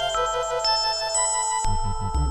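Synthesizer drone music from a VCV Rack software modular patch: a low sustained drone under high held tones that step to a new pitch about every half second. The low part shifts to a new pattern near the end.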